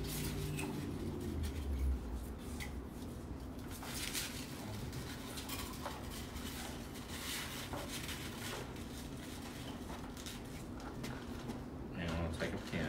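Scattered light taps, clicks and rustles of flower stems being handled and pushed into an arrangement in a container, over a faint steady low hum.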